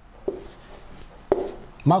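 Marker pen writing on a whiteboard: a faint high scratch as the tip moves, with two sharp taps where it strikes the board, about a quarter second in and again about a second later.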